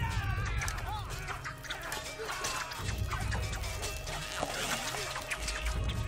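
Dramatic film score with low booming beats under battle sound effects: a horse whinnies near the start, over scattered clatter.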